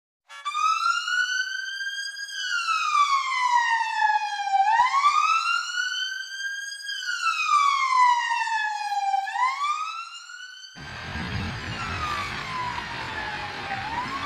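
Fire engine siren wailing, its pitch rising and falling slowly, one sweep about every four and a half seconds. About eleven seconds in the sound changes abruptly to a noisy background, with the wail still heard fainter behind it.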